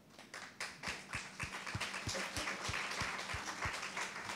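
Audience applause that starts just after a pause, builds over the first second and keeps going as dense, steady clapping.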